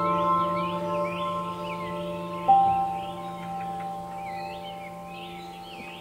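Relaxing background music of long ringing bell-like notes, with a new note struck about two and a half seconds in and left to fade, over a layer of chirping birdsong.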